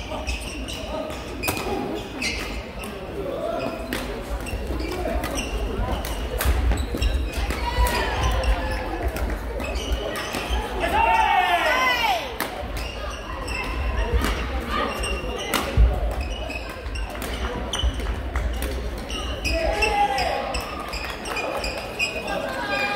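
Badminton hall ambience: sharp racket-on-shuttlecock hits from the surrounding courts ring out every second or so, over the overlapping voices of players and spectators, with reverberation from the large hall. A burst of high squealing about eleven seconds in.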